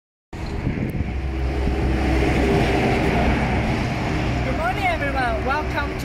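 A motor vehicle's low rumble with a noisy wash over it, swelling to its loudest a couple of seconds in and then easing off, as of a vehicle passing by. Voices come in near the end.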